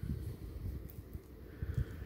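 Soft handling noise from fingers turning and gripping a small plastic action figure: low rubbing and light irregular bumps, with a couple of slightly sharper knocks near the end.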